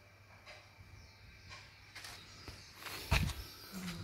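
Low background room tone with one short thump and rustle about three seconds in.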